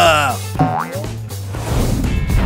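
Cartoon sound effects over background music: a quick rising 'boing'-like glide about two-thirds of a second in, then a swelling hiss near the end, as the toy dinosaur knocks the lion down. A voice trails off at the very start.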